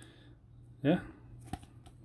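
A sleeved trading card being handled and turned over in the hands, with one sharp click a little past the middle.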